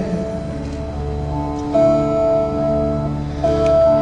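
Live instrumental accompaniment in a gap between sung lines: held chords that change about two seconds in and again near the end.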